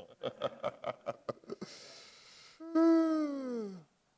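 A person laughing in a quick run of short chuckles, then a breath and a long 'aah' that falls steadily in pitch and stops just before the end.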